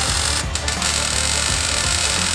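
MIG welder arc crackling and hissing steadily as steel tray mounts are welded onto a steel chassis, with a brief break about half a second in. Background music plays underneath.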